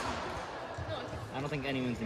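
Indistinct voices of spectators in a large indoor hall, with a sharp knock at the very start and a man's voice rising near the end.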